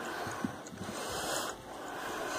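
Faint scuffs and a few soft knocks from a basset hound puppy climbing carpeted stairs, with one small click about half a second in, over a steady hiss.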